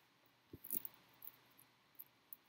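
Faint clicks and light rustling from a ribbon of jumper wires being handled, their plastic connector ends tapping together, with a short cluster of clicks just after half a second in.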